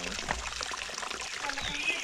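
Steady hiss of water trickling over rocks in a small mountain stream. A high, pulsing buzz comes in near the end.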